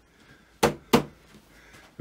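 Two sharp knocks about a third of a second apart, a little over half a second in.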